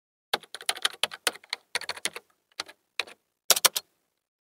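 Computer keyboard typing: quick, uneven runs of key clicks in several bursts, starting about a third of a second in and stopping just before the end.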